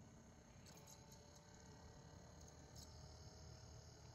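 Near silence: faint room tone, with a few faint short ticks.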